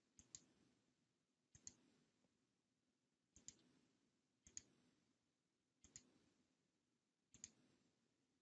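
Computer mouse clicking: six faint clicks spaced one to two seconds apart, each a quick double tick of button press and release.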